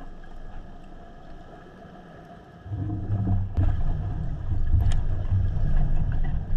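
Muffled underwater rumble: quiet at first, then a low, rough rumble that starts suddenly about two and a half seconds in and carries on, with two sharp clicks near the middle.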